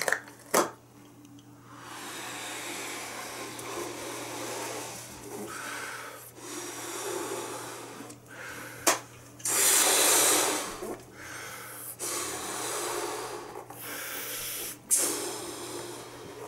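A latex balloon being blown up by mouth: about five long breaths pushed into it one after another, with short pauses for air between them and a few sharp clicks. It is being inflated to bursting point.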